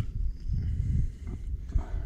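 Low, uneven rumble of wind buffeting the microphone, rising and falling, with no clear splash or knock standing out.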